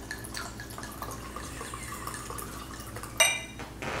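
Red wine poured from a glass bottle into a stemmed wine glass, a steady quiet trickle of liquid filling the glass. About three seconds in, a brief glassy clink rings out.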